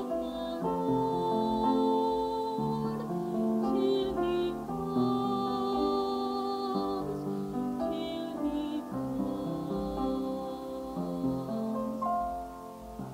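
Slow, gentle devotional music: a keyboard accompaniment of held chords, with some notes wavering in a vibrato.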